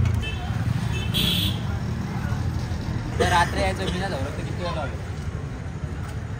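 Street ambience: a steady low traffic rumble, with a brief higher sound about a second in and a few distant voices.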